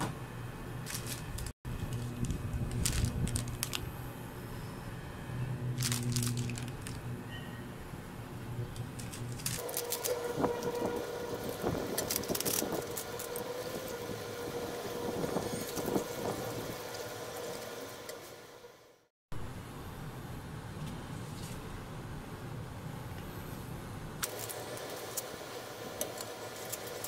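A steady hum from an induction cooker under a steel pan of broth, with scattered clicks and stirring noises from wooden chopsticks in the pan. The hum changes pitch partway through, and there are two abrupt dropouts where the footage is cut.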